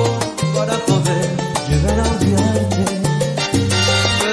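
Salsa music: a bass line moving between held notes under steady percussion and dense instrumental accompaniment, with no vocal in this stretch.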